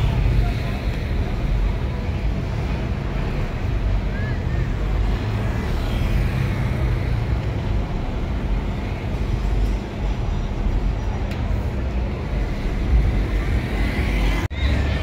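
Steady low rumble of a moving vehicle and street traffic, with wind buffeting the microphone.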